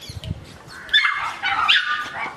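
Corgi puppies giving high-pitched yips and whines from about a second in, as they play together.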